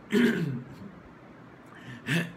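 A man clears his throat once, a short rasp with a falling pitch, just after the start.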